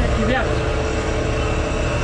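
Diesel engine of a hydraulic excavator running with a steady low hum, with a voice heard briefly near the start.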